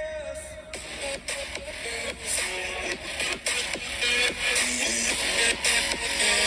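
An electronic dance track playing through the iPhone 12 mini's stereo earpiece and bottom-firing speakers: a sliding lead note, then a beat comes in about a second in. The bass is thin, but the sound doesn't distort.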